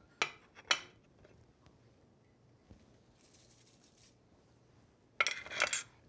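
Two light metal clinks of a spoon against a stainless steel pot about half a second apart, then a few seconds of near quiet, and near the end a louder clatter of kitchen utensils and cookware being handled.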